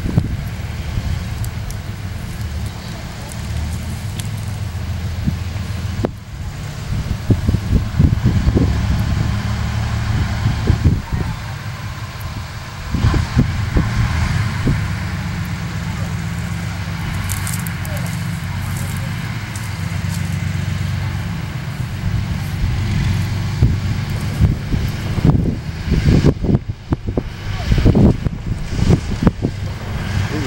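T-34-85 tank's V-2 V12 diesel engine running as the tank drives and turns on grass, a steady deep drone with louder surges now and then.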